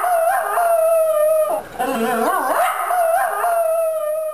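A dog howling in imitation of a rooster's crow: two long howls, each wavering at the start and then held on a steady pitch. The first ends about a second and a half in and the second follows straight after.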